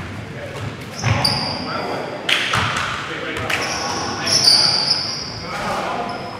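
Live basketball game sound in a gymnasium: sneakers squeaking on the hardwood court, loudest a little past the middle, a basketball bouncing, and voices echoing in the hall.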